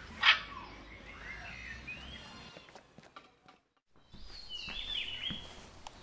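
Bird chirps and whistled calls. A short loud burst of noise comes just after the start, and the sound cuts out briefly in the middle before higher, falling whistles follow.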